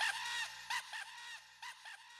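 A laugh used as a sound effect at the end of the track, its 'ha' repeating in echoes a few times a second and fading away.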